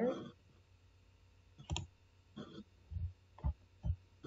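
Computer mouse clicking, about five separate clicks at uneven intervals in the second half.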